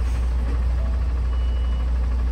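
Diesel engine of an HGV tractor unit idling steadily, a deep even hum heard from inside the cab.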